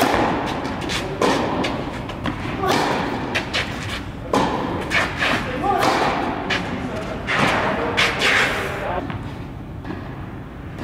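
Tennis balls struck by racket strings and bouncing on an indoor court: a serve, then a rally with a sharp hit about every second or so, each echoing in the large hall.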